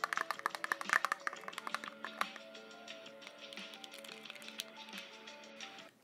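Metal tweezers clicking and tapping rapidly against a small plastic container as they stir metallic powder into mixing liquid. The clicks are densest in the first two seconds and sparser after, over background music with steady held notes.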